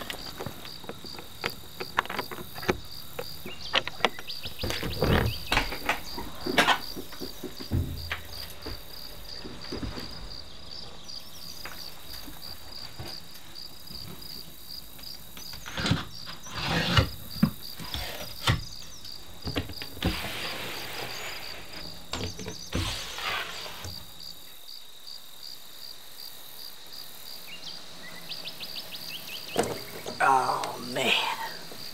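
Crickets trilling steadily at a high pitch, a fast even pulsing. Over it come scattered sharp clicks and knocks of a metal trailer door latch and padlock being unlocked and handled, with a louder cluster of knocks about halfway through.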